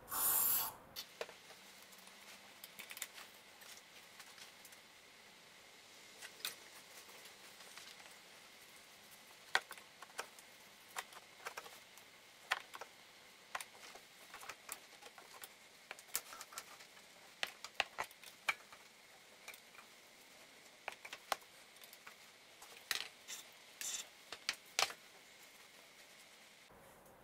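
A short hiss of aerosol carburetor cleaner sprayed through a straw into a car's throttle body, lasting under a second at the start. Then faint, scattered scrapes and rubs of a rag wiping carbon build-up from inside the throttle body bore.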